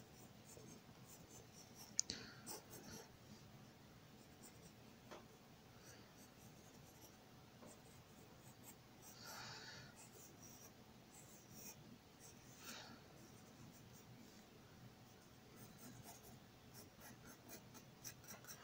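Faint scratching of a pencil sketching on paper in short, scattered strokes, with a single sharp click about two seconds in.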